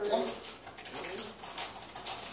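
Mostly speech: a drawn-out 'oh' and low talking. Between the words are faint light scrapes and clicks of a utensil stirring in a frying pan.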